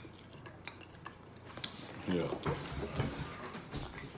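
Two people chewing jelly beans: a few small mouth clicks, then low murmured voice sounds from about two seconds in.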